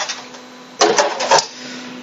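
Brief rustling and clatter of objects being handled about a second in, over a steady low hum.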